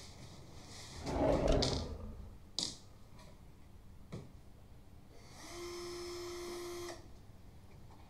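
Handling sounds of objects being moved around a desk: a loud rustling scrape about a second in, then a couple of light clicks. A steady held tone follows for about a second and a half near the end.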